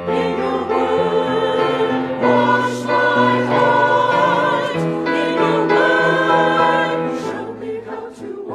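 A mixed church choir of men and women singing an anthem in parts, with held low accompaniment notes that shift every few seconds.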